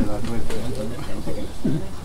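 A low cooing bird call, with quieter voices under it.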